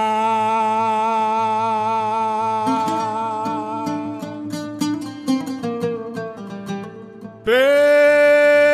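A man's voice holds one long sung note in traditional Greek style. About three seconds in, an oud begins plucking a melodic line under it, and the oud carries on alone for a while. Near the end the voice comes back loud on a new held note.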